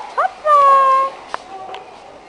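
A small child's high-pitched vocal squeals: a short rising call, then a louder, longer one that falls slightly in pitch.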